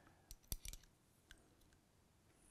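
A few faint, sharp metallic clicks as a caliper's jaws and headspace comparator body are handled and closed around a loaded rifle cartridge, the sharpest about half a second in.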